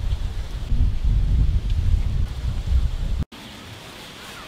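Wind buffeting the microphone: a loud, gusty low rumble that cuts off abruptly about three seconds in, leaving only a faint background hiss.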